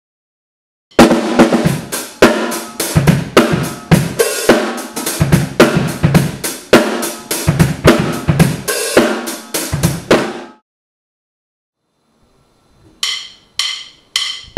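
Drum kit playing a groove of kick drum, snare and cymbals, which stops about ten and a half seconds in. Near the end come two short, ringing clicks.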